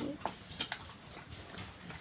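Faint rustling and soft clicks of small cardboard boxes and foil packets being handled and opened.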